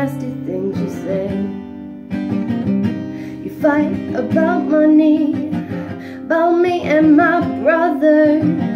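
Acoustic guitar strummed in chords, with a woman singing over it. The guitar is heard alone for the first few seconds, and her voice comes in about halfway through.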